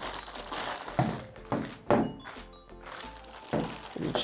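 A clear plastic bag crinkles as a folded tripod is pulled out of it, with a few dull thunks of the tripod against the tabletop, over soft background music.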